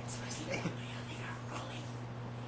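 A man speaking quietly, close to a whisper, over a steady low hum.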